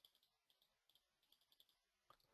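Near silence, with faint, rapid clicks of a computer mouse in short runs.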